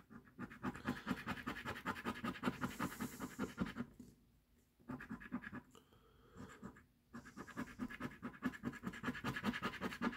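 Coin scraping the scratch-off coating from a paper lottery scratcher in quick, repeated strokes, stopping briefly twice midway.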